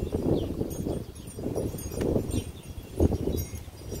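Wind buffeting the microphone: an uneven low rumble that swells and drops with the gusts.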